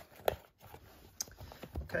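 Cardboard rubbing and scraping as a boxed Blu-ray set is slid out of its flimsy cardboard slipcase. A short knock comes about a third of a second in and a light click about a second later.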